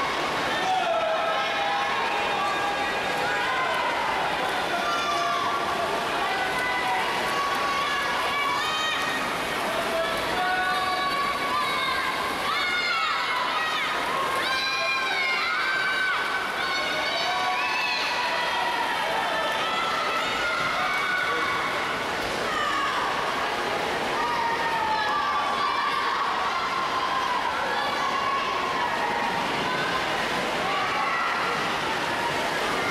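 Crowd of spectators and teammates shouting and cheering on the swimmers in a race, many high-pitched voices overlapping, with water splashing beneath.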